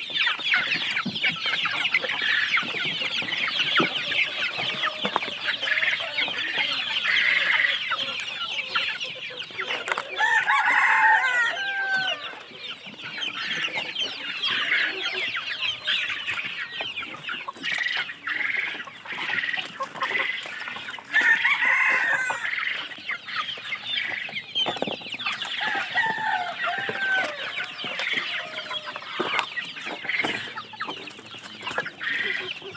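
A large flock of young native chickens clucking and cheeping continuously in a dense chatter, with a few louder calls standing out about ten seconds in and again after twenty seconds.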